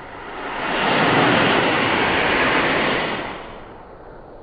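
Model rocket lifting off the pad: the rushing hiss of its solid-fuel motor swells over about a second, holds loud for about two seconds, and fades away near the end.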